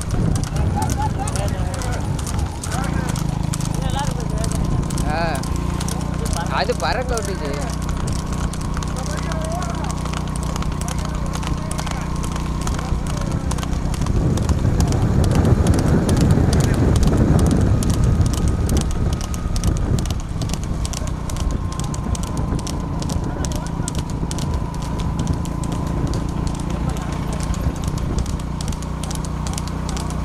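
Hooves of racing horses clattering rapidly on an asphalt road as they pull light two-wheeled racing sulkies at speed. Voices shout over the hoofbeats in the first several seconds, and a steady low drone runs underneath.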